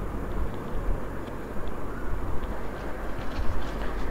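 Low, steady rumble of handling noise as the phone camera is moved about, with a few faint light ticks.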